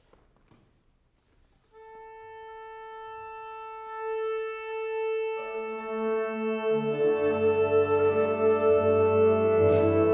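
A wind ensemble tuning. After a moment of near silence, a single wind instrument sounds one steady held tuning note, and a few seconds later the other players join on the same pitch and on lower notes, swelling into a sustained chord.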